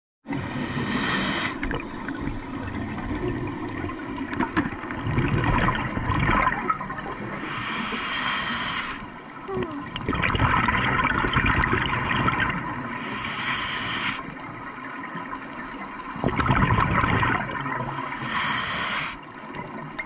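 Scuba diver breathing through a regulator underwater: four inhalations, each a short hiss, roughly every six seconds, each followed by a longer gurgling rush of exhaled bubbles.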